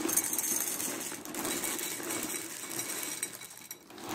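Dry Boo Berry cereal pieces and marshmallows pouring from the box into a ceramic bowl: a steady rattle of many small pieces hitting the dish and each other, thinning out near the end as the pour stops.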